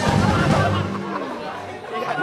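Several voices chattering at once over the end of a short music sting, which fades out about a second in.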